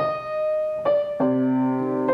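Upright piano played slowly: single right-hand melody notes struck one at a time, with lower left-hand notes joining just after a second in and ringing on beneath them.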